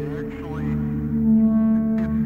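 Modular synthesizer music: a sustained low drone of several steady tones, with short sliding, chirping tones above it in the first half.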